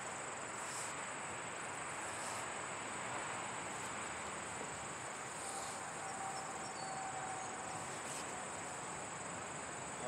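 Insects chirring in a steady, high continuous trill over a faint even background hiss.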